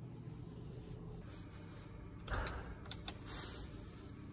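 Quiet office room tone with a steady low electrical hum. A little past halfway there is a brief rustle, then three quick sharp clicks.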